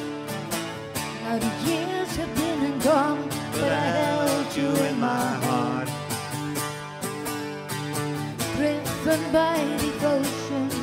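Live acoustic song: an acoustic guitar strummed in a steady rhythm, with a woman singing a melody over it in two phrases.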